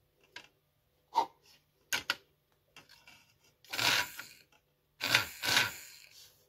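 Handling noise from fingers working on the wires and small fan motor inside the plastic housing of a mini UV nail dryer: a few sharp clicks, then two stretches of rubbing and scraping in the second half.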